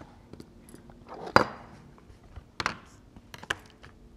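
Scattered light knocks and clicks of a clear acrylic quilting ruler and a rotary cutter being handled and set down on fabric over a cutting mat, as the fabric is lined up for trimming; the loudest knock comes about a second and a half in.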